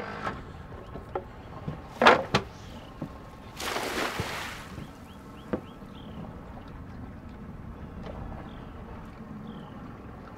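A shad cast net thrown from a boat. A sharp knock about two seconds in, then a second later a brief splashing hiss as the net lands on the water, over the low steady running of the boat's motor in reverse.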